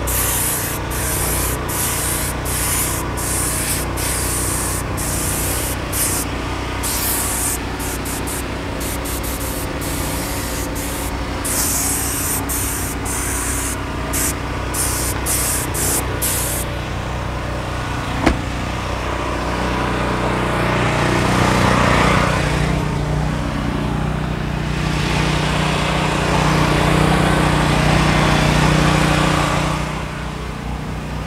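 Compressed-air detail gun spraying a diluted dressing (Aquagloss 1:1) at about 45 psi: a hiss fired in many short pulls, one after another, for roughly the first half. The spraying then stops, and a low mechanical hum swells twice in the second half.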